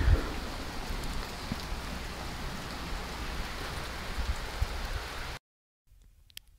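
Freezing rain falling steadily during an ice storm, an even hiss of rain on ice-glazed surfaces, which cuts off suddenly near the end.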